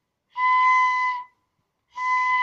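A child blowing a bamboo flute: one steady, breathy note held for about a second, with a second note of the same pitch starting at the end.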